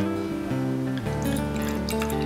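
Background acoustic guitar music with held notes that change about a second in; near the end, white wine starts pouring into a wine glass with a light splashing trickle.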